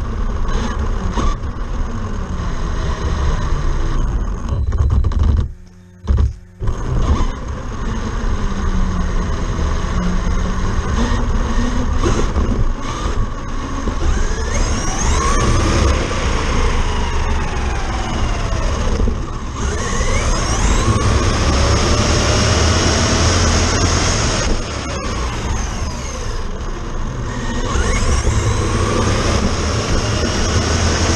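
Traxxas Slash RC truck on a 4S battery at full speed, heard from a camera mounted on the truck: the brushless motor whine rises and falls as it speeds up and slows, over steady road rumble and wind on the microphone. The sound drops away briefly about six seconds in.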